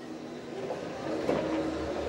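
Rebuilt Bulleid West Country class Pacific steam locomotive rolling slowly into a station, a steady low running sound of the train on the move.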